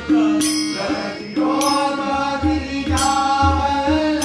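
Men singing a devotional chant together, accompanied by tabla played in a steady rhythm with deep bass strokes.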